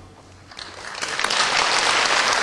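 Theatre audience applause breaking out about half a second in, as the last orchestral chord dies away, and swelling into steady clapping.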